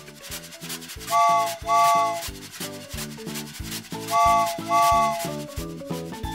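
Cartoon steam-train sound effect: a rhythmic chugging with two pairs of chord-whistle toots ("choo choo"), one pair about a second in and another about four seconds in.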